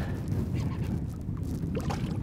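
A hooked striped bass splashing and thrashing at the water's surface beside the boat, over steady wind and water noise, with a few small splashes near the end.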